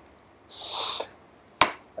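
A man drawing in a breath, about half a second long, then a single sharp click about a second later.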